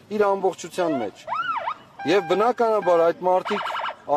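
A man speaking, with a siren-like electronic tone that rises and falls once about a second in and a fast pulsing tone near the end.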